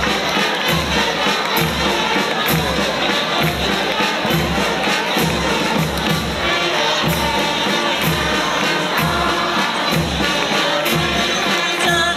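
Band music with a steady bass-drum beat, under a loud, cheering crowd.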